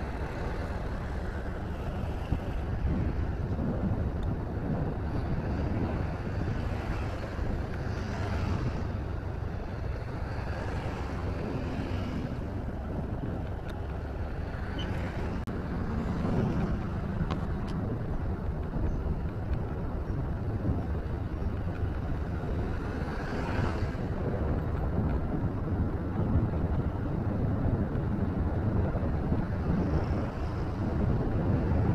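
Steady wind rush and engine and road noise from a moving motorcycle, with a few swells as other vehicles pass.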